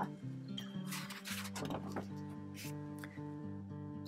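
Quiet instrumental background music with sustained notes, and a brief paper rustle about a second in as a picture-book page is turned.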